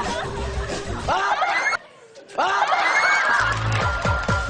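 Several people laughing and shrieking over background music with a steady bass beat. The sound cuts out abruptly for about half a second in the middle, then the laughter and music resume.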